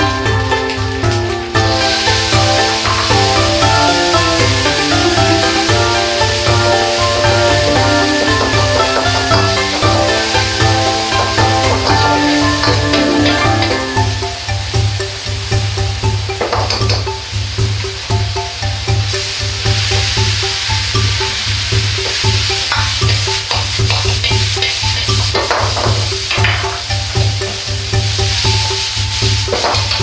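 Background music with a steady beat over frying in a wok: a loud sizzle starts about two seconds in as pasta cooking water goes into the hot wok with the sausage and garlic, and carries on while the wok is stirred and tossed over the burner, with a few short knocks of the ladle on the wok.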